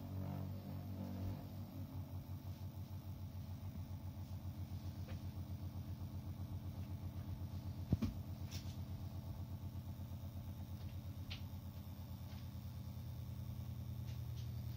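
Homemade adjustable magnetic stirrer running, its speed being set on the regulator: a low electric hum with a rapid, even pulsing. A single sharp click comes about eight seconds in.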